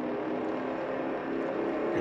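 A late-1960s American muscle-car V8 running hard at a steady pitch at speed, heard as a film soundtrack.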